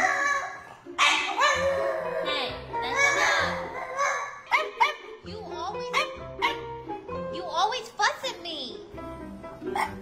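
French bulldog barking and grumbling back at its owner in protest at being refused more food, first with a few longer drawn-out calls, then with a rapid string of short rising-and-falling yelps from about halfway. Background music plays underneath.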